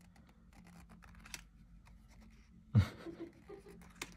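Faint scattered clicks and light scratching of stiff cardboard cards being handled and shuffled in the hand. One short, louder sound comes almost three seconds in.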